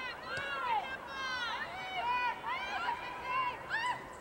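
High-pitched voices calling out in quick overlapping shouts whose pitch slides up and down, with no clear words.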